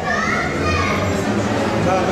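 Voices talking and calling out in a large hall, several people at once.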